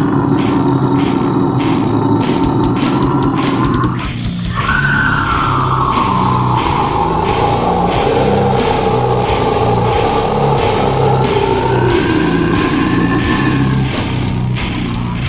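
Brutal death metal with fast drumming and distorted guitars, and a man's extreme vocal screamed over it on the exhale: a held scream that breaks off about four seconds in, then one long held scream that sinks in pitch and rises again near the end.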